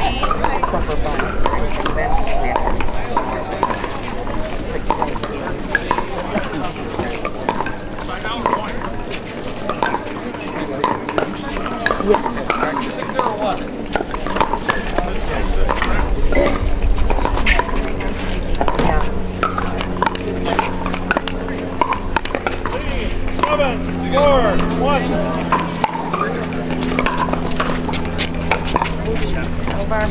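Background voices of players and spectators, with scattered sharp pops of paddles hitting balls on nearby pickleball courts. A steady hum with several tones comes in partway through.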